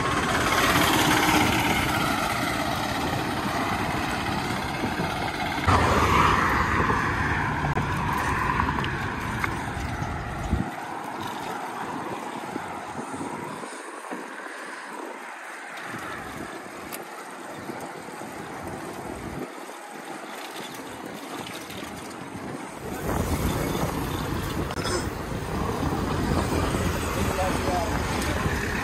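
Wind rushing over the microphone of a camera on a moving bicycle, mixed with road traffic noise. The low rumble drops away for about twelve seconds in the middle, then comes back.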